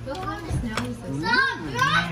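Voices talking and exclaiming at close range, with a couple of brief clicks.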